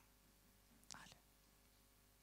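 Near silence: room tone through the microphone, with one faint short hiss about a second in.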